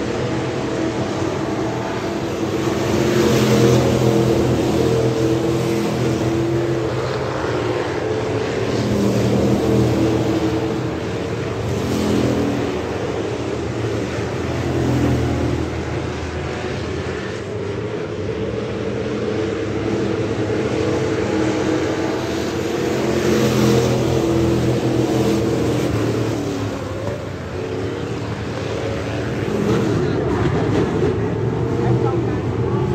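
Pack of Thunder Bomber dirt-track stock cars racing, their engines running hard and swelling louder several times as cars come past, then easing off.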